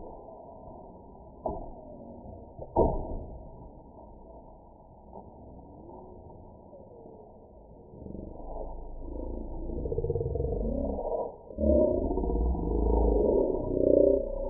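Slowed-down, deep-pitched slow-motion audio of a pole vault: low, smeared rumbling with two sharp knocks early on and louder, muffled rumbling from about two thirds of the way through.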